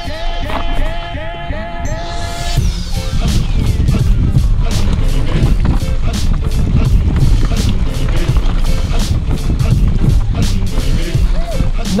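Mountain bike descending a loose, rocky dirt trail at speed, heard from a camera on the rider: a steady low rumble of wind and tyres with a constant rapid clatter of the bike over rocks. A pitched tone wavers up and down over the first couple of seconds, and a high tone then glides steadily downward.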